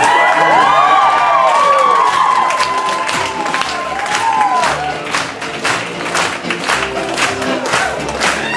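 An audience cheering and whooping over live fiddle music, with a long held shout in the first few seconds, then rhythmic clapping along with the tune.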